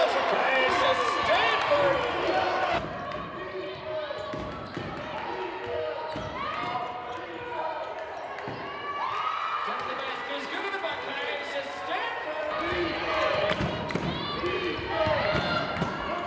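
Live court sound from a women's basketball game in a large arena: a ball bouncing on the hardwood, scattered knocks and voices calling out across the hall. The sound changes abruptly a few seconds in and again near the end, where highlight clips are cut together.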